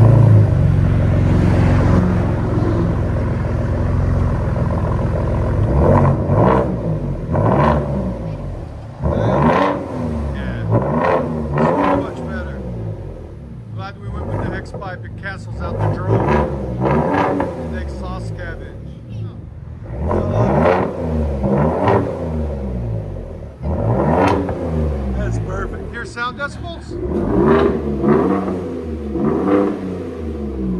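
2021 Ford F-150 Tremor's 3.5 L EcoBoost twin-turbo V6 through an X-pipe and straight-piped true dual exhaust, mufflers and resonator deleted. It fires up and idles loudly for about five seconds, then is revved again and again, each rev a quick rise and fall in pitch a second or two apart.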